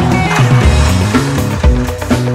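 Live psychedelic rock band playing loud, with a moving bass line, a kick drum landing about once a second and cymbals over the top.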